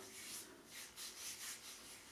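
Hand rubbing a thick shea butter hair mask into the skin of a forearm: faint, quick, repeated skin-on-skin strokes.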